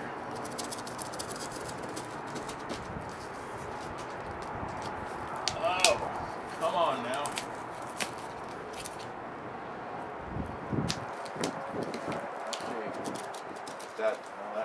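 Two taped-together sheets of cardboard being handled and pried apart, with scattered sharp clicks and scrapes over a steady hiss of wind on the microphone.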